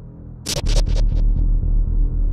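Film sound-design drone: a steady low hum that swells louder about half a second in. At that point a sharp hit repeats as a quick run of fading echoes.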